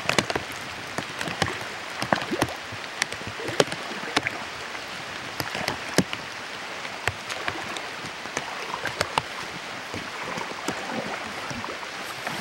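Rubber boots wading through shallow, muddy floodwater: irregular splashes and sloshes over a steady watery hiss.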